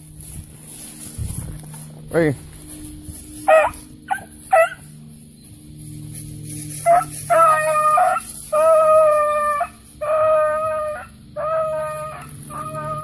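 Beagle gives a few short yips, then a run of long, drawn-out bays about a second each with short breaths between: a hound opening on a rabbit's scent trail.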